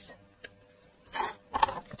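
Handling of a roll of foam adhesive tape at a craft table: a light tick, a brief rustle about a second in, then a few sharp clicks near the end as scissors are brought to the tape.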